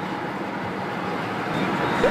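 Steady road and engine noise of a car driving along a highway, heard from inside the cabin.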